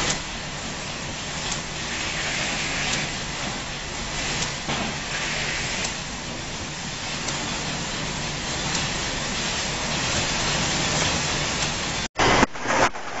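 Steady, hissing machine noise of an automated pick-and-place packing line, with its robot arms and conveyors running and a few faint clicks now and then.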